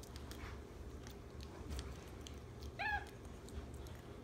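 Capuchin monkey eating cake, with faint smacking clicks of chewing, and one short high squeak about three seconds in.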